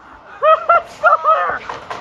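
A man laughing out loud in a quick run of about five short bursts, over the first second and a half.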